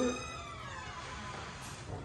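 A word of speech, then several high tones sliding down in pitch together over about a second and a half, fading out.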